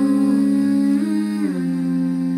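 A woman's voice humming sustained closed-mouth notes, layered in harmony with no beat under them. The notes lift slightly about a second in, then drop a step.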